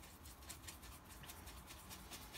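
Faint, irregular scratchy ticks of a paintbrush working watercolour paint in a palette.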